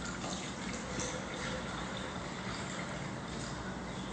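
Milk pouring from a glass bottle into a Thermomix mixing bowl, a quiet, steady trickle of liquid.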